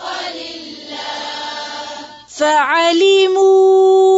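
A woman chanting a Quran verse in melodic tajweed recitation. A breathy, hazy passage is followed, about two and a half seconds in, by a swoop down and back up in pitch, and then one long note held steady.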